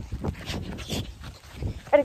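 Irregular soft knocks and rustles from a hand-held phone being swung about, handling noise on its microphone.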